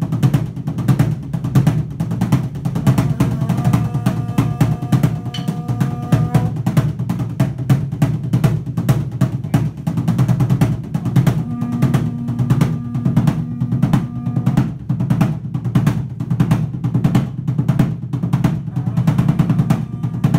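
Tall upright skin-headed drum beaten with sticks in a fast, steady roll. Twice, a wind instrument sounds one long held note over it.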